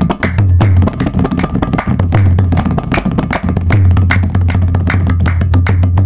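Tabla playing a fast qawwali theka (nobat): rapid, sharp strokes on the small treble drum over the deep, sustained bass of the bayan, with hand claps keeping time.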